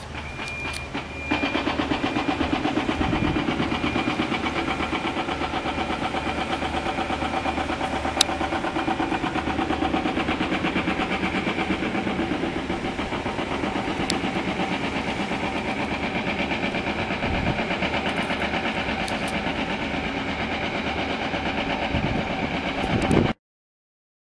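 An engine of machinery on a building site running steadily, with a fast pulsing beat. It comes in suddenly about a second in and cuts off abruptly near the end.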